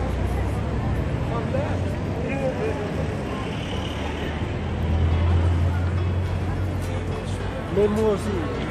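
Busy street ambience: a steady low rumble of traffic, heaviest about five seconds in, with the faint chatter of passing pedestrians.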